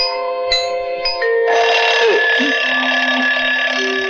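Mechanical alarm clock bell ringing continuously for about two and a half seconds, starting about a second and a half in, over light glockenspiel-like music.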